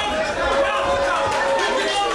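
Ringside crowd voices: several people shouting and talking over one another, with general crowd chatter in a large hall.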